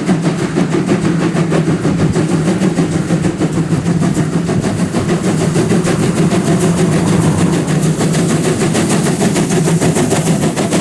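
DR class 86 steam tank locomotive 86 1333 working hard at the head of a passenger train, a fast, steady beat of exhaust chuffs over a steady low drone, growing closer as it approaches.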